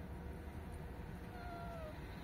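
A cat meows once near the end, a short call of about half a second that falls slightly in pitch.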